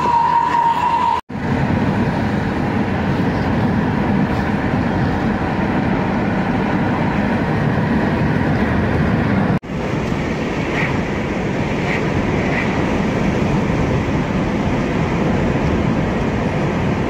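Steady engine and tyre noise of a car driving along a paved road, cutting out briefly twice.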